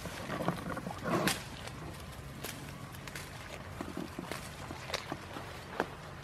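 Goats browsing in leafy bushes: leaves and twigs rustling and snapping as they pull and chew foliage, in short irregular crackles, with a louder brief rustling burst about a second in.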